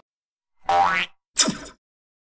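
Two cartoon sound effects: a rising swoop about half a second in, then a quick falling swoop a little over a second in.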